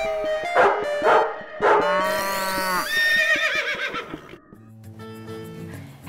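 Short musical jingle with dog barks mixed in: three quick barks in the first two seconds, then a longer wavering animal call, before it settles into softer held notes near the end.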